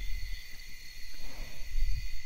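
Steady high chirring of crickets or other insects, holding several even pitches, over a low rumble.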